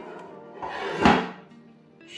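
Background music, with a short swell of noise that builds over about half a second and ends in a thump about a second in.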